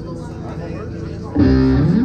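Amplified electric guitar played once: a loud low chord starts suddenly about one and a half seconds in, rings for about half a second, slides upward in pitch and is cut off.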